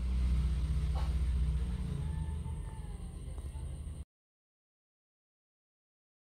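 Low steady rumble of a pot of pempek fish cakes at a rolling boil on the stove while a spatula stirs them, with a light knock about a second in. The sound cuts off abruptly about four seconds in, leaving dead silence.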